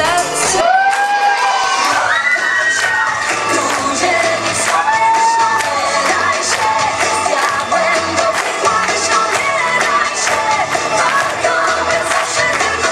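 A young audience cheering and whooping over loud pop music, with a girl singing into a microphone over a backing track.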